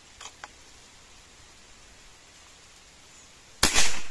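A single sharp shot from a CBC B57 unregulated PCP air rifle in .177 (4.5 mm), fired near the end, with a brief tail after the crack.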